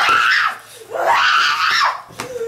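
A young woman screaming in an acted tantrum: a short scream at the start, then a longer, high-pitched scream about a second in.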